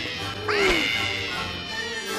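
Cartoon kitten's yowl, one of a string of identical looped repeats coming about every one and a half seconds, with a new one starting about half a second in. Film music plays underneath.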